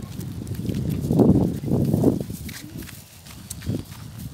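Wind buffeting the phone's microphone: irregular low rumbling gusts, loudest in the middle, easing off after about two seconds.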